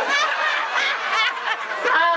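A group of people laughing together at a joke's punchline, several voices overlapping.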